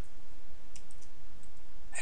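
A few faint computer-keyboard key clicks as code is typed, over a steady low background hum.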